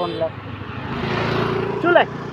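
A vehicle passing by, its noise swelling and then easing over about a second and a half, between two short spoken words.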